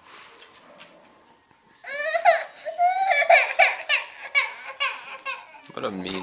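Baby laughing in a run of short, high giggles that start about two seconds in, after a quiet stretch.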